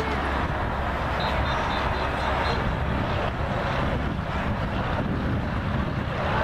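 Steady low rumble of wind on the camcorder's microphone, over a faint outdoor background of a sports field.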